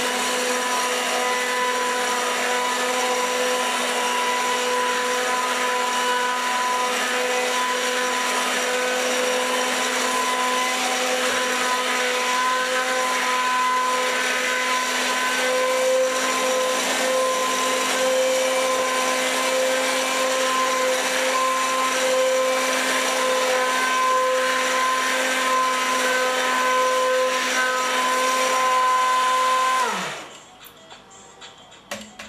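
Electric immersion blender running steadily in a pot of lentil soup, puréeing it. The motor whine holds a steady pitch throughout and cuts off abruptly at the very end.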